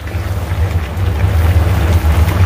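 Pot of fish stew boiling hard over a stove flame: a steady low rumble with a hiss over it.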